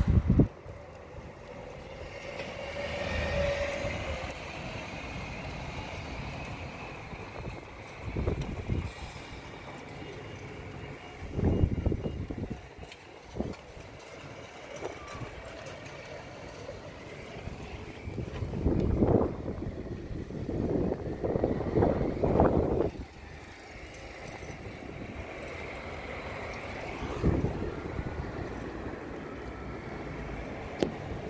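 Steady outdoor background rumble. Several louder bursts of noise break in, each about a second long, with the biggest cluster about two-thirds of the way through.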